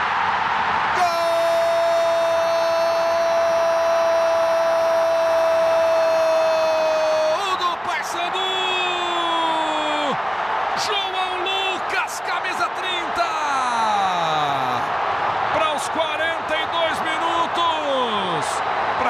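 Football commentator's goal cry: one long shouted "gol" held about six seconds, starting about a second in, then shorter shouts that fall in pitch, over steady stadium crowd noise.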